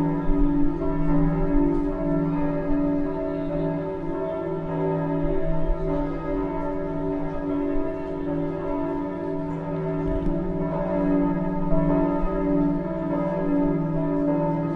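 Bells ringing in overlapping, long-held tones that keep being renewed.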